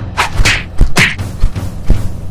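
Fight sound effects laid over the action: quick whooshing swishes and punch thumps, about seven in two seconds.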